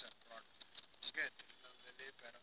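Faint voices talking in the background, with a few sharp crinkling clicks on top. The loudest click comes right at the start and another cluster about a second in.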